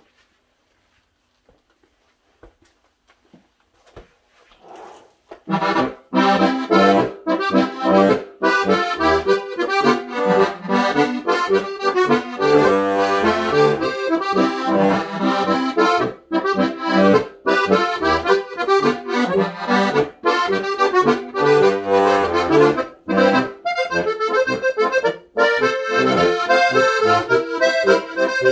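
Steirische Harmonika (Styrian diatonic button accordion) in acacia wood, tuned G-C-F-B, playing a lively tune with melody over bass. It starts after about five seconds of near quiet.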